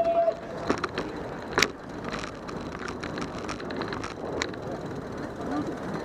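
Outdoor city street ambience: chatter from a crowd of pedestrians over steady street noise, with two sharp knocks in the first two seconds.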